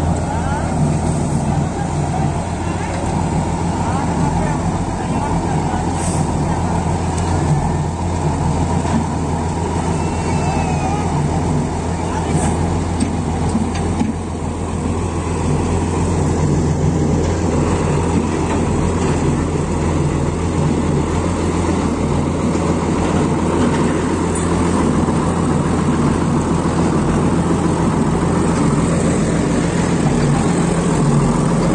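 Three-wheel static road roller's diesel engine running steadily as it works fresh asphalt, a loud, even low hum.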